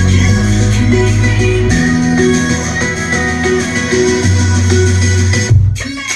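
Music with a plucked guitar and heavy bass played through a Philips 5.1 home theater speaker set whose subwoofer output drives an external 400-watt subwoofer amplifier. The deep bass notes change about once a second and drop out briefly near the end.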